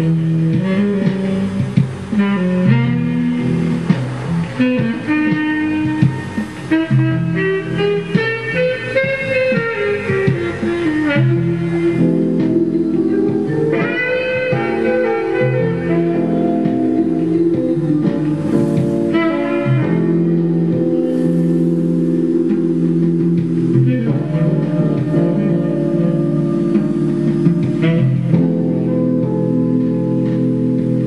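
Instrumental smooth jazz on keyboards and tenor saxophone: a melody that bends in pitch over chords and bass, settling into sustained chords about halfway through.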